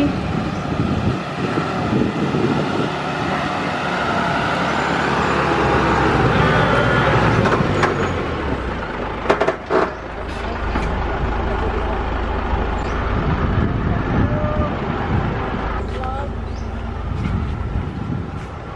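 Large delivery truck's engine running as it drives in and stops, with a steady low rumble and a couple of sharp knocks about nine seconds in.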